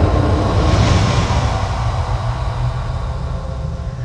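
Sound-designed horror effect of a deep, rumbling vacuum-like sucking from an otherworldly void, with a hiss swelling about a second in, then slowly fading.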